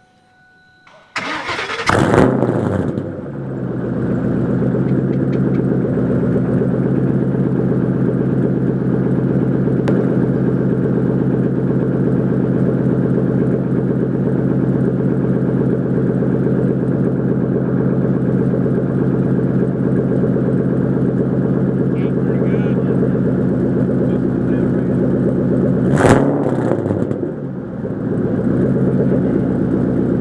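Mustang Bullitt's V8 cranked and started through a custom single 3-inch Magnaflow exhaust, heard at the tailpipe: a loud flare on catching, then settling into a steady, deep idle. Near the end a sharp burst and a brief dip in the idle, after which it runs steadily again.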